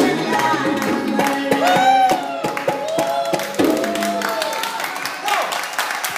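Live Indian song with tabla and harmonium, a voice singing long notes that rise and fall over steady hand clapping; the drumming fades and the music thins out toward the end.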